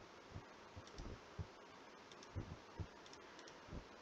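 Faint, irregularly spaced computer mouse clicks, about eight over four seconds, against near-silent room tone.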